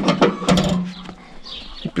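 A few sharp metallic clicks and knocks from parts of an old tractor being handled, with a short low steady hum about a quarter of the way in.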